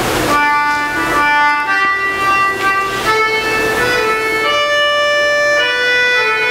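Organ music begins about a third of a second in: held chords under a slow melody, each note sustained at an even level for half a second to a second before moving on.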